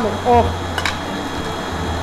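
Stand mixer motor running steadily as it beats butter, with one sharp crack a little under a second in, as an egg is broken against a bowl.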